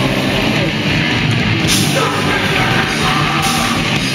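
Live heavy rock band playing loud: distorted electric guitar and a drum kit, with a singer yelling into the microphone. Cymbal crashes ring out just before two seconds in and again near the end.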